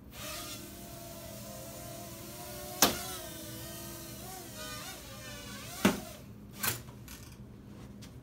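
Small toy quadcopter's motors and propellers whirring as it takes off and flies, the pitch wavering with the throttle. Sharp knocks about three seconds in and again near six seconds, where the motors cut out, and a last knock shortly after: the drone striking something and coming down.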